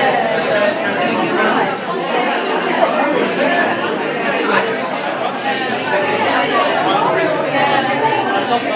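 Indistinct chatter of many people talking at once in a gallery room, no single voice standing out.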